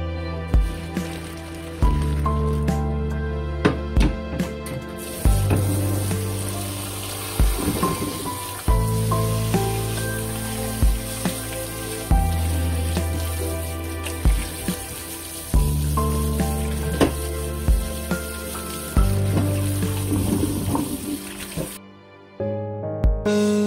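Instrumental background music. From about five seconds in, a tap runs cold water into a stainless steel colander as cooked noodles are rubbed and rinsed in it in the sink.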